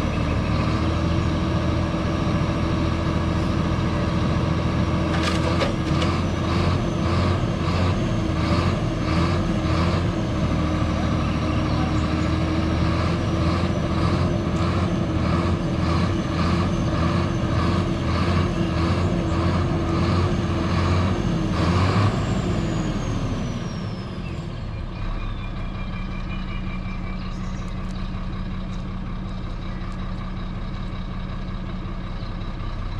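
Heavy dump truck's diesel engine running at steady raised revs, with a rhythmic pulse a little under twice a second. About 22 seconds in the revs fall away and it settles to a lower, steady idle.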